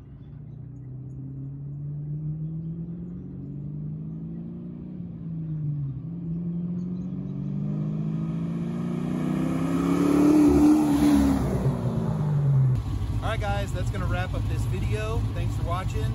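1973 Camaro restomod's engine accelerating toward and past the listener: the note climbs, dips briefly about five seconds in, then climbs again and is loudest around ten to eleven seconds, its pitch falling as the car goes by.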